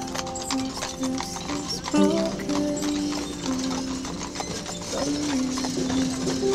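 Horses' hooves clip-clopping on pavement at a walk, with many irregular clicks, as a team pulls a caisson. Under them runs a slow song's instrumental passage of held notes.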